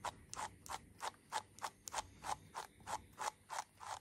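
A small slicker brush's wire bristles raking through a long-haired rabbit's foot fur in quick short strokes, about four or five a second, working out small mats.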